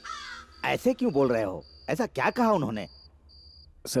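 A voice speaks briefly. Behind it a faint, thin, high-pitched chirp repeats in short even pulses about every half second.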